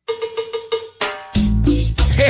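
Opening of a cumbia song: a rapid pattern of ringing metallic percussion strikes plays alone, then just over a second in the full band comes in with bass and drums.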